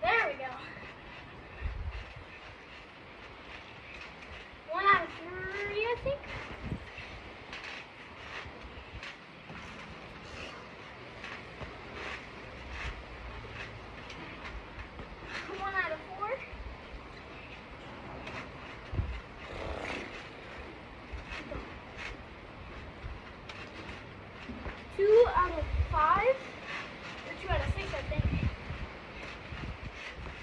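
Thumps and rattles of a backyard trampoline and a basketball as the ball is bounced and shot at a trampoline-mounted hoop. A voice calls out briefly a few times, loudest about three-quarters of the way through, with heavy thumps just after.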